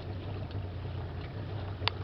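Small boat's motor running with a steady low hum as the boat cruises slowly, with a single sharp click near the end.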